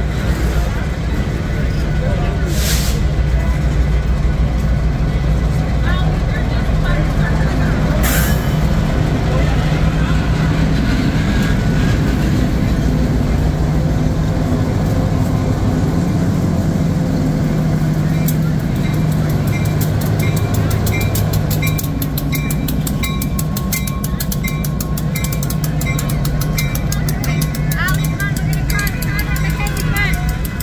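Freight train passing close by: a loud, steady rumble of wheels and cars, with two sharp clanks about three and eight seconds in, and a Union Pacific diesel locomotive going by about halfway. From a little past the middle, a level-crossing bell rings steadily, several strokes a second.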